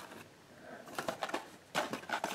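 Packaging being handled on a shelf: a few light knocks and rustles, a cluster about a second in and another near the end.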